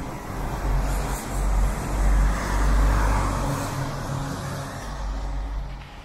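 A car driving past, its engine and tyre noise swelling to a peak about halfway through and then fading.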